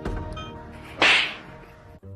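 Background music with a sudden loud whip-like swish about a second in, likely a sound effect laid over the cat's pounce.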